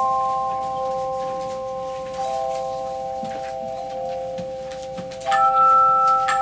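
A handchime choir plays a hymn: chords of ringing tones sustain and slowly fade, new notes sound about two seconds in, and a louder chord is struck near the end.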